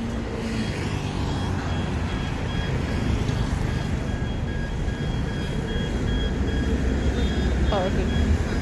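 City street traffic at an intersection: a steady rumble of passing cars, a bus and scooters, with no single vehicle standing out.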